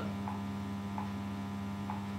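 Steady electrical mains hum, with a few faint short ticks about half a second, a second and almost two seconds in.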